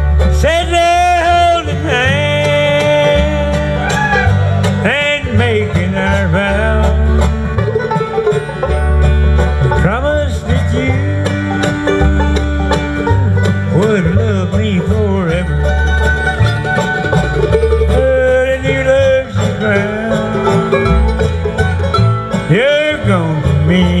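Live bluegrass band playing: banjo, mandolin, acoustic guitar, dobro and upright bass together, the bass plucking a steady pulsing low line under the picked and sliding melody.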